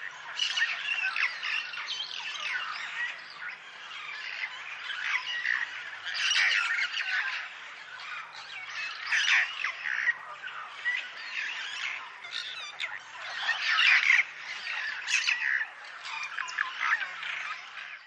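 Several birds calling over one another: harsh squawks and chirps that swell into louder bouts every few seconds.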